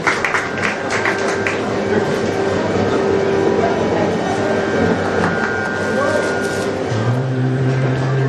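A few scattered hand claps in the first second or so, then a hubbub of voices over a steady held note. Near the end a low, steady drone note comes in, the pitch drone for the Kathakali singing.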